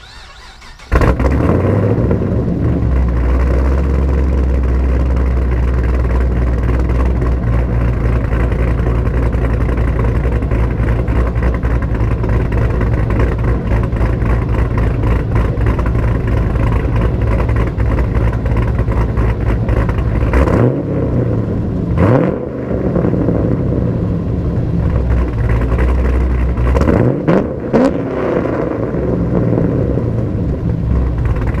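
A 2010 Camaro SS's 6.2 L V8, heard through a Stainless Works Retro cat-back exhaust, starts up about a second in and settles into a steady idle. It is revved a few times in the last third, with rising blips near the end.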